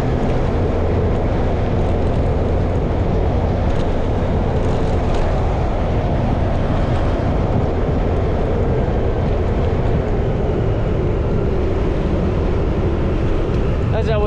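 A motorbike riding at a steady speed, its engine running evenly under a constant rush of wind and road noise.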